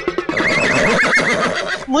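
A horse-whinny sound effect, wavering in pitch for about a second and a half.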